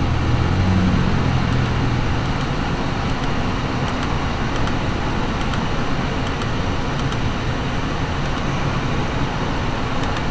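Steady in-cabin noise of the 2013 Audi A6's 2.0-litre turbocharged four-cylinder idling in Park, with the ventilation fan blowing; a low hum is stronger in the first couple of seconds. A few faint clicks are heard.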